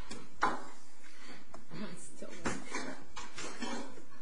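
Indistinct talking between a few people, with a couple of brief clicks about half a second in and again past the middle.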